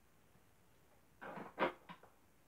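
Lamp shade being handled and fitted onto a lamp: a brief rustle about a second in, then a sharp knock and a lighter click near the end.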